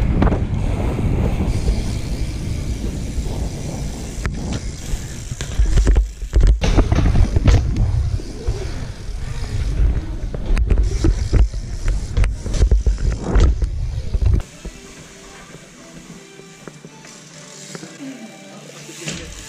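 Bike riding heard through an action camera's microphone: loud rumble from wind and tyres on hard ground, with sharp knocks from the bike and its landings, and music along with it. About three quarters of the way through, the sound drops abruptly to a quieter stretch.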